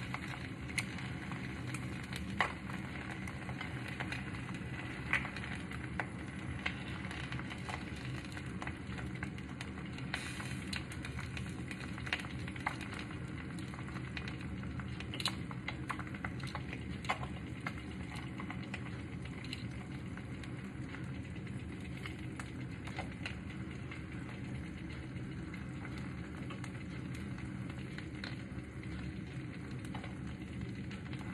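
An egg frying in a pan: a steady sizzle with scattered small pops throughout.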